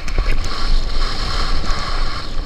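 Wind buffeting the microphone of an action camera on a mountain bike descending a dirt trail, a steady low rumble with hiss from the tyres rolling over dry gravel and a few faint clicks from the bike.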